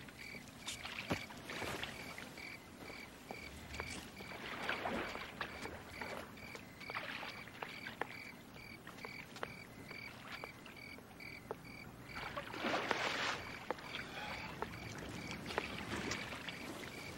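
Water splashing and lapping in a swimming pool as a swimmer moves through it, with a fuller splash about twelve and a half seconds in. A steady high pulsing chirp, a couple of pulses a second, runs underneath.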